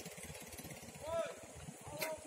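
Faint chewing of crunchy wild Lantana trifolia berries: irregular soft crunches and mouth sounds. A brief faint high call sounds about a second in.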